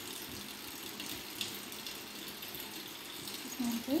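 Steady sizzling hiss of hot oil frying in a kadai.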